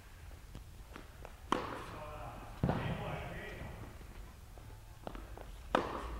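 Tennis balls being hit on an indoor court. There is a sharp racket-on-ball strike about a second and a half in and another just before the end, each echoing briefly in the hall. Lighter footfalls sound on the court in between.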